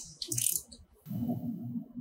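A sharp metallic click, then light metal clinking and rattling as parts are handled at the spindle head's air cylinder mount, followed by duller handling noise.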